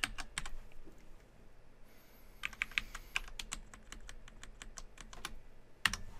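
Keystrokes on a computer keyboard: light, irregular typing in short bursts, with a sharper click near the end.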